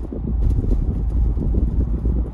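Road and wind noise inside a moving car's cabin: a steady low rumble from tyres and engine while cruising along a paved road.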